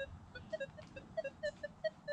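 Minelab metal detector giving a quick series of short, quiet beeps, about ten in two seconds, each at a slightly different pitch.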